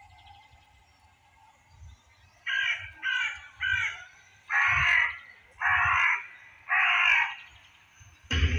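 Six harsh, crow-like caws: three short ones about half a second apart, then three longer, drawn-out ones about a second apart.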